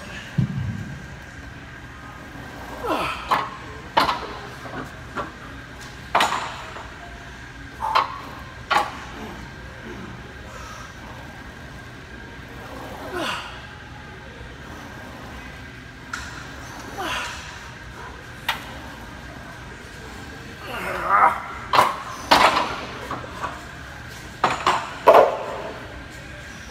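Plate-loaded leg press machine and its weight plates giving scattered sharp metal clanks, several in quick succession near the end, with indistinct voices between them.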